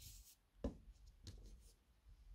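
Faint handling sounds of a crocheted piece and hook being turned over on a table: a brief rustle at the start, then a light tap a little over half a second in, and a fainter tap soon after.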